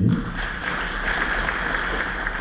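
Audience applauding: a steady, dense patter of many hands clapping at once.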